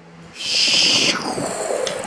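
A child's mouth-made rocket whoosh for a toy rocket in flight: a hissing "shhh" that starts about half a second in, is loudest for about a second, then tails off.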